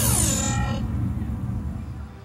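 Electronic dance track over stage PA speakers ending: the whole mix slides steeply down in pitch over about the first second, like a winding-down effect, while a low bass rumble carries on and fades away near the end.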